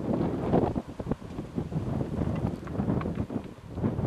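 Wind buffeting the microphone in irregular gusts, a loud low rushing noise with uneven flutters.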